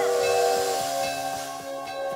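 Steam hissing from a steam train, over held tones that fade out within the first second.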